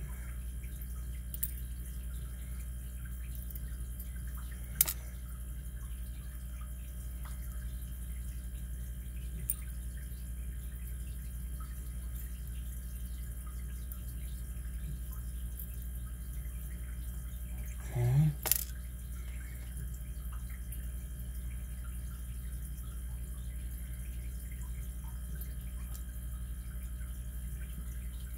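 A few faint, sharp clicks of a small metal pick against a brass lock core as its pins and springs are examined, the clearest about five seconds in, over a steady low background hum. A brief low murmur of a voice about two thirds of the way through.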